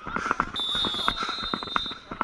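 A referee's whistle blown in one long, steady, high blast that starts about half a second in and lasts about a second and a half.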